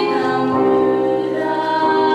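Two women singing a duet in harmony, holding long sung notes that change pitch about half a second in and again near the end.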